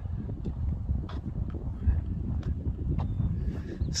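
Low wind rumble on the microphone, with faint soft footfalls on grass about every half second.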